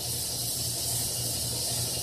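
Steady room noise: a constant high hiss with a low hum underneath, no distinct events.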